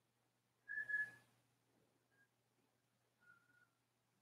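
Faint whistling tones: a short high whistle with a breathy rush about a second in, a brief blip at about two seconds, and a slightly wavering whistle near the end, over a faint low hum.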